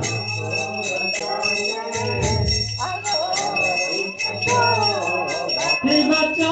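A hand bell rung rapidly and continuously, several strokes a second, as in the bell-ringing of a temple arati lamp offering, with devotional singing and music under it.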